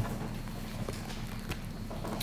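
A few faint, irregularly spaced knocks from a man moving about at a wooden lectern, over a steady low hum of room noise.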